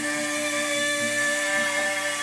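The final note of a live vocal and guitar song: one long, steady note held at the vocal microphone, with the guitar's quick repeated low notes under it.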